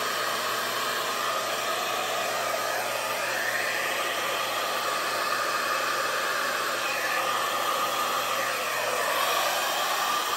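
Handheld hair dryer running steadily, its air blowing across a wet puddle of fluid acrylic paint to spread it into a bloom. The tone of the rush wavers up and down a little as the dryer is moved about.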